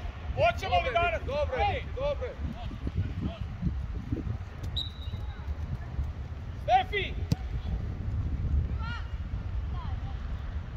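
High-pitched shouts and calls of young footballers on the pitch, a burst in the first two seconds and short calls about seven and nine seconds in, over a steady low rumble. A single sharp knock of a foot striking the football comes about seven seconds in.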